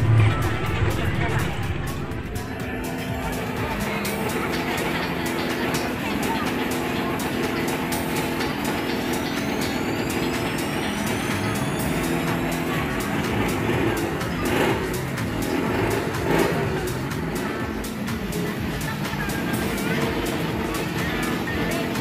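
Busy night-market fairground din: many people talking and music from loudspeakers, with a motor running underneath. Two brief louder bursts come about two-thirds of the way through.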